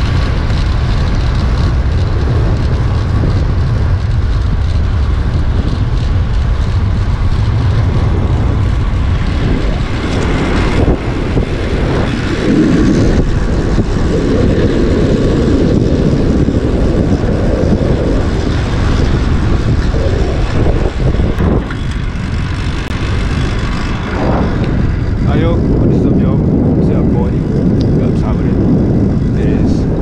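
Steady wind rumble buffeting the microphone of a camera on a moving bicycle, with traffic noise underneath.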